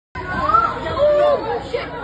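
Several people shouting and calling out excitedly over one another, with one drawn-out high shout about a second in.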